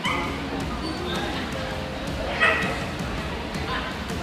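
Dog barking, with its loudest bark about two and a half seconds in, over background pop music.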